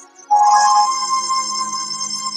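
Worship music on an electronic keyboard: a sustained chord comes in suddenly, loud, about a third of a second in and holds steady.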